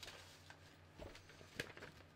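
Near silence with a low steady hum, broken by two faint rustles of paper handout sheets being handled, about a second in and again half a second later.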